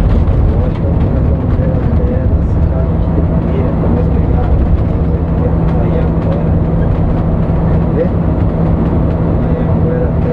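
Interior of a coach bus cruising on a highway: a steady, loud engine and road rumble with a constant low drone.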